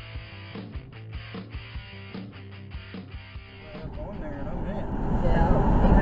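Intro music with a beat plays for a few seconds, then gives way to the low rumble of a car driving, heard from inside the cabin, growing louder. Voices come in near the end.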